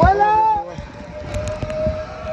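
A person's rising squeal, about half a second long, with a nervous edge, then a thin steady whine underneath.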